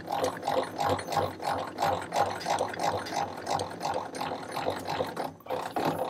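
The traverse handwheel of a 7.5 cm le.IG 18 infantry gun being cranked, its traverse screw and mechanism making a steady rhythmic mechanical sound, about three beats a second, as the whole gun and trail pivot sideways on the axle. The cranking stops near the end.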